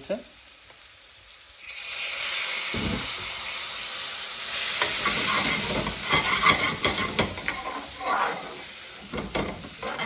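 Water poured from a kettle into a hot pan of spiced green beans, setting off a loud, steady sizzle about two seconds in as it boils off in steam. A metal spoon then stirs and scrapes the pan, clicking against it while the sizzling goes on.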